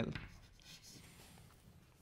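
Chalk writing a word on a blackboard: faint scratching and tapping strokes, mostly in the first second.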